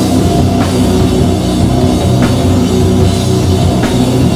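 A doom/sludge metal band playing live at a slow tempo: heavy distorted guitars and bass hold low, sustained notes over a drum kit. Cymbal hits land about every second and a half.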